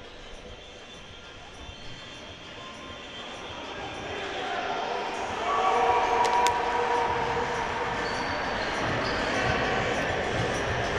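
Court sound of a basketball game: a ball bouncing on the wooden floor and players' voices, growing louder over the first five seconds or so.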